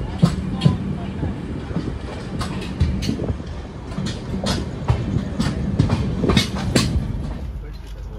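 Passenger train rolling slowly out of a station, its wheels clicking and knocking irregularly over rail joints and points above a steady low rumble. Near the end the sound turns duller and quieter.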